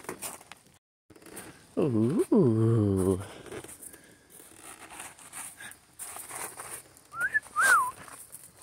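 A man's voice making a long wordless "ooh" that swoops down low and rises again, then two short high whistled chirps near the end.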